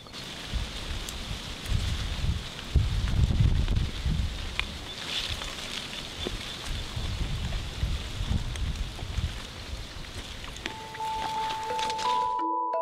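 Wind buffeting the microphone in uneven gusts of low rumble, with leaves rustling as a cherry tree's branches are handled. Near the end, a few mallet-like music notes come in.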